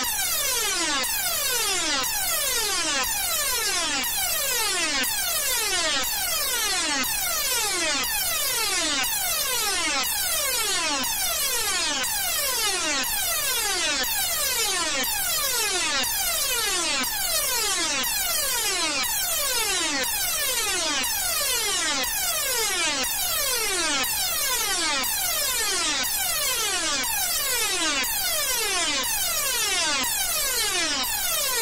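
Edited synthesized tone audio: a buzzy electronic tone sweeping downward in pitch over and over, about once a second, each fall overlapping the next so the pitch seems to keep falling, at a steady level.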